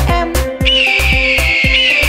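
A long, high eagle screech sound effect that starts about two-thirds of a second in and slides slightly down in pitch, over children's music with a steady beat.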